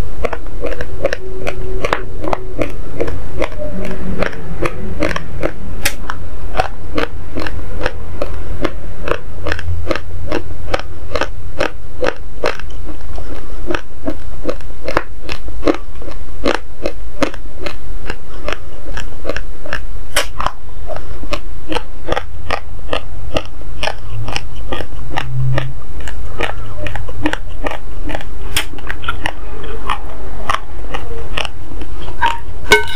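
Raw, uncooked basmati rice grains being chewed close to the microphone: a steady run of sharp, dry crunches, about three a second.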